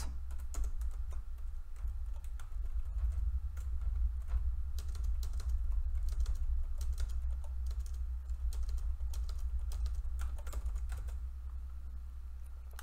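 Typing on a computer keyboard: irregular keystrokes in uneven spells, over a steady low hum.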